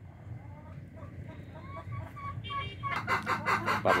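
Domestic hens clucking: faint short calls at first, then about three seconds in a loud, fast run of clucks, several a second.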